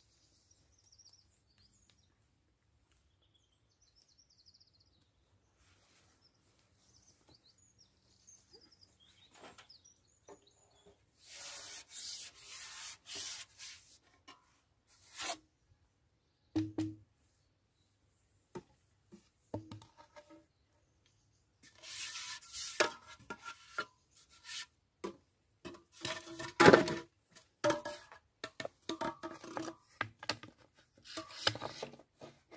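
Faint bird chirps at first, then repeated bursts of rubbing and rustling handling noise from fishing tackle being handled, loudest and busiest in the second half.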